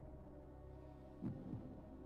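Quiet room tone: a faint, steady low hum, with a brief soft low sound a little past the middle.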